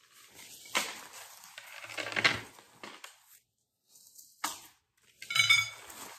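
Rustling and brushing of artificial flower stems and plastic leaves being pushed into a woven basket, in several short bursts with a quiet gap in the middle.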